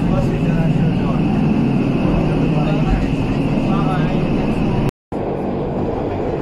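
Running noise inside a Pilatus Railway electric cog-railway car on the climb, a loud steady rumble with passengers' chatter over it. The sound breaks off for an instant about five seconds in, then a similar steady noise resumes.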